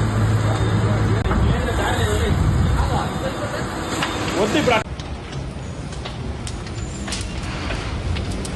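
On-scene sound of a building on fire: a steady noisy rumble with voices shouting over it, then an abrupt cut about five seconds in to a quieter rushing noise with scattered sharp crackles.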